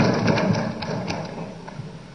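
Low background murmur of the assembly chamber, fading away over the two seconds, with a few faint clicks.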